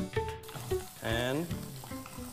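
Garlic sizzling as it fries in a pan with onion and mushroom, stirred with a wooden spatula; the hiss fills in about half a second in. Background music with a brief pitched phrase runs underneath.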